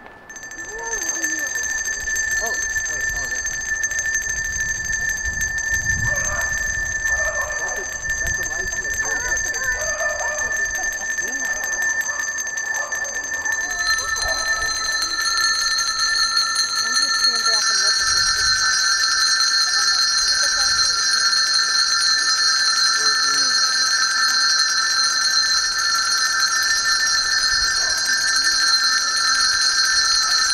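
Colour-coded handbells rung continuously by a crowd, each colour sounding one note. A single high note rings steadily from about a second in. Lower notes join about halfway through and again shortly after, as more coloured groups start ringing, building a sustained chord. Voices murmur under the first half.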